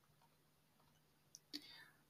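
Near silence: quiet room tone with a faint short click about one and a half seconds in.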